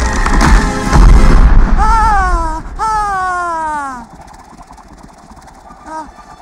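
Film action sound mix: deep booming impacts over music for the first second and a half, then two long pitched tones falling in pitch, after which the sound drops much quieter.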